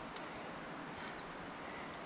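Faint, steady outdoor background hiss on a mountain trail, with a short high chirp about a second in.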